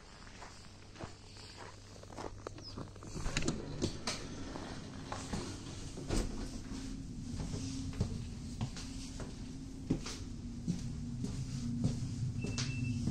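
Footsteps on a snowy platform and then into a train carriage, with scattered knocks and clicks as the filmer boards. A low steady hum from the carriage comes in about halfway and grows louder toward the end.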